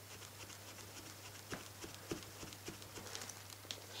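Faint rubbing of a white eraser against a hard plastic mask, with irregular light clicks and taps of the eraser and fingertips on the plastic. A steady low hum sits underneath.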